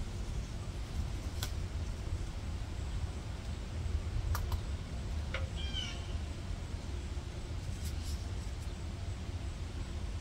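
A low steady rumble, with a few light clicks of pruning shears snipping at a bell pepper plant. A short, high, chirping animal call comes about halfway through.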